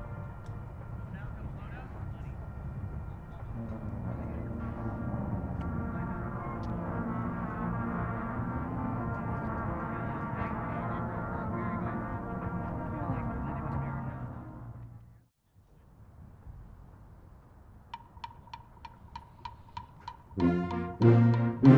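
Quiet open-air murmur with faint held tones in the pause between hornline phrases. It cuts off abruptly about three-quarters of the way in. Near the end an electronic metronome beeps a steady quick pulse, just before the brass hornline comes back in loudly.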